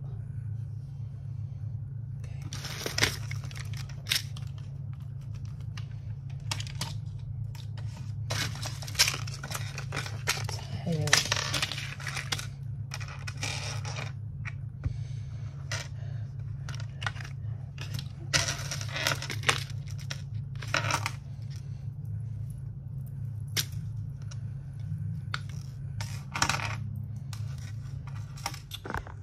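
Metal jewellery (chains, bracelets and small pieces) clinking and jangling in a string of short irregular clicks as it is picked up and sorted by hand on a counter. There are a few longer rustling or scraping stretches, over a steady low hum.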